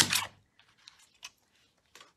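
A small paper trimmer's blade drawn along its track in one quick stroke, slicing a strip off a sheet of cardstock, followed by a couple of faint light ticks.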